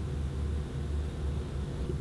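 Low steady background rumble with a faint hiss: room tone between remarks.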